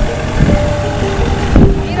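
A fishing boat's engine running as it motors away, a steady hum over a low rumble, with wind buffeting the microphone. A voice speaks briefly near the end.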